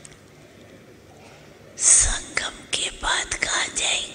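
Faint room tone, then from about halfway through a person whispering a few breathy words close to the microphone.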